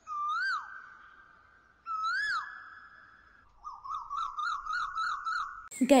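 Whistled bird-call sound effects: two calls that swoop up and down, each trailing off in a fading held tone, then a rapid warbling trill of about four wavers a second.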